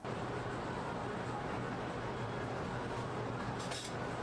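A steady low hum over an even background noise, with a brief hiss near the end.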